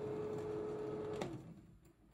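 Prestinox 680 Auto slide projector's cooling fan motor running with a steady hum, then a click a little over a second in, after which the hum drops in pitch and fades as the motor winds down.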